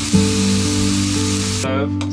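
Two steaks sizzling in a hot frying pan, an even hiss that cuts off suddenly near the end, heard under a song's held chords.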